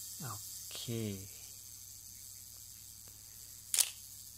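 Shutter of a Pentax MV-1 35 mm film SLR firing: one sharp, loud click near the end.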